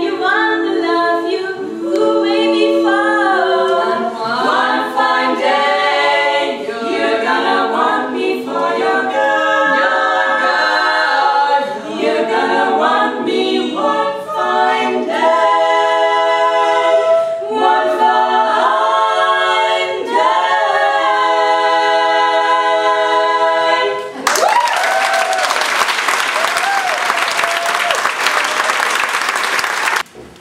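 Women's barbershop quartet singing a cappella in close four-part harmony, ending on a held chord about 24 seconds in. Audience applause follows.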